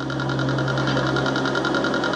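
Television sound-effect of a small submarine's machinery running inside its cockpit: a fast, even mechanical pulsing over a steady low hum, played through a TV speaker.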